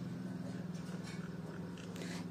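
Saho sewing machine running steadily with a low, even hum as it stitches along a folded fabric edge.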